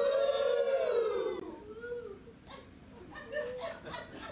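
A woman's singing voice holding a long final note that swells up in pitch and then falls away, ending about a second and a half in. It is followed by quieter scattered claps and voices.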